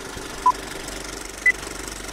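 Two short electronic beeps a second apart, the second one higher in pitch, like the closing pips of a countdown. They sound over a steady low mechanical rattle.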